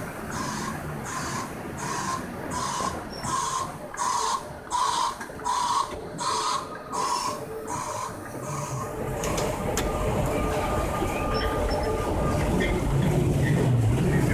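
Repeated beeping, about two beeps a second, which stops about eight seconds in. A steady mechanical hum follows and grows louder toward the end.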